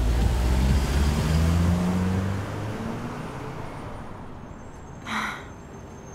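A car pulling away: its engine note rises a little as it accelerates, then fades steadily into the distance over about four seconds. A short breathy sound, like a sigh, comes about five seconds in.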